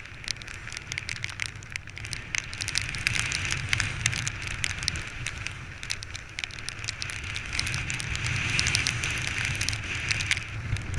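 Windsurfer sailing through a choppy sea, picked up by a rig-mounted camera: a steady rush of wind and water with a low rumble, peppered with many small crackling ticks of spray and chop hitting the gear.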